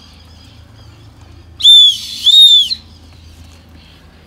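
Emergency safety whistle built into the sternum-strap buckle of an Osprey Talon 44 backpack, blown twice in two short, shrill blasts about half a second apart, each rising and then falling slightly in pitch: a distress or rescue signal.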